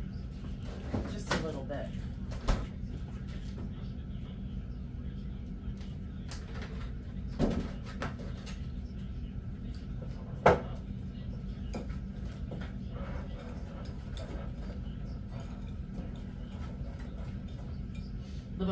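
Kitchen handling sounds: a refrigerator door opened and shut, a plastic milk jug set down on the table, and a spoon knocking against a bowl while milk is stirred into a mix. A few sharp knocks stand out over a steady low hum, the sharpest about ten seconds in.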